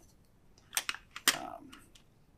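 Small kit items clicking into a small metal tin: two sharp clicks about half a second apart, about a second in, the second followed by a short rattle.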